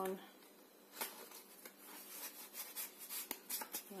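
A photo print being slid into the slot of a cardstock frame: faint paper rustling and scraping, with a sharp click of card about a second in and a few light clicks near the end.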